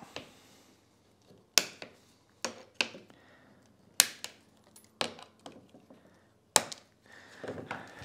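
Cutting pliers snipping protruding steel brad nails flush with a thin wooden lid: a series of about six sharp, separate snaps, irregularly spaced.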